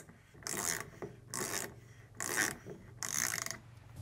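Hand socket ratchet clicking in four short strokes, a little under a second apart, as it loosens the centre bolt holding a washing machine's direct-drive motor rotor.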